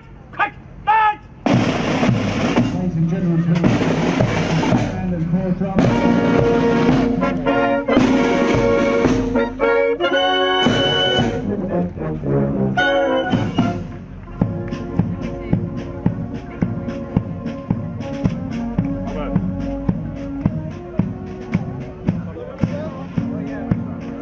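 Military marching band of side drums, brass and clarinets striking up about a second and a half in with loud held chords and drum rolls, then settling into a march with a steady drum beat about two a second.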